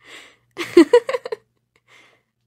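A person's voice making wordless sounds: a short breath, then a quick run of voiced syllables lasting under a second.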